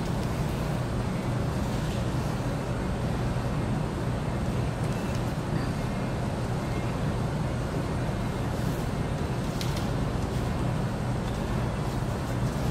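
Steady low hum and rumble of background noise in a restaurant dining room, with no distinct events apart from a couple of faint small clicks near the end.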